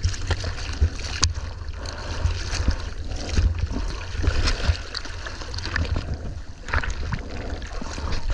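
Seawater sloshing and splashing around a surfboard as it is paddled through small chop, with many irregular splashes and a low rumble of water buffeting a camera at the waterline.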